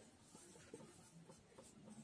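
Faint strokes of a marker pen on a whiteboard as words are written.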